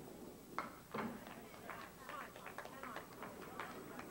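Candlepins clattering at the end of the lane as the ball and falling wood hit them: a sharp knock about half a second in and another at about a second, then a run of lighter clicks and rattles as pins settle.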